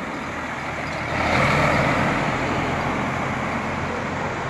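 Street traffic: a vehicle passing close by, its noise swelling about a second in and slowly fading, with a low engine hum underneath.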